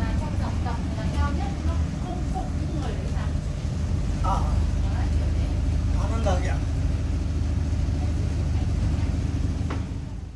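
Tour boat's engine running with a steady low drone, heard from inside the cabin, with snatches of voices over it.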